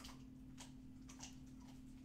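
Faint, irregular crunching clicks of a dog chewing on a bone, over a steady low hum.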